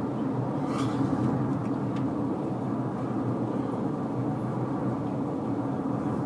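Steady low rumble of a car cabin on the move: engine and road noise heard from inside the car.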